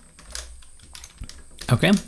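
Typing on a computer keyboard: a run of faint key clicks.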